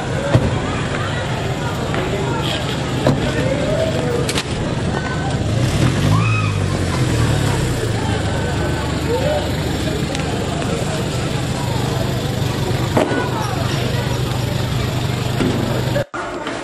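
A vehicle engine running steadily, louder for a moment about six seconds in, with scattered voices and shouts around it.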